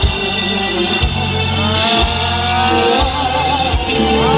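Live band music with a male singer singing into a microphone: a deep, sustained bass with drum hits about once a second, and a held, wavering sung note in the second half.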